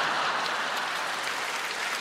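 Concert audience applauding steadily, easing slightly toward the end.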